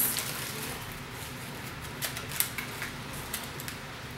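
Light rustling of paper wrapping and a few small sharp clicks as a small glass bottle wrapped in brown paper is handled and unwrapped.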